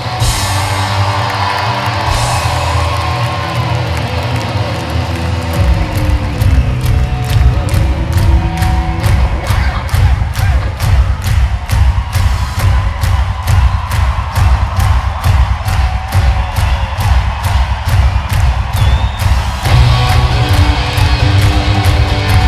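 Live rock band playing in an arena, heard from within the audience. Held chords give way to a steady, regular beat about six seconds in, and the full band comes back in near the end.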